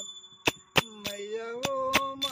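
Small metal hand cymbals (manjira) clinking in a loose beat, their ring carrying between strikes. A man's voice comes in about half a second in, singing a long note of a devotional bhajan that rises and is held.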